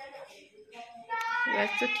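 A voice in a soft sing-song, then a woman begins speaking a little over a second in.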